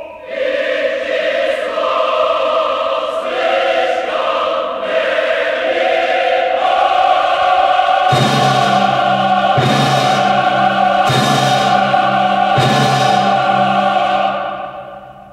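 Large mixed choir with orchestra singing slow, broad sustained chords in a maestoso oratorio finale. About halfway through, a deep held chord enters under the voices, marked by four heavy strikes about a second and a half apart.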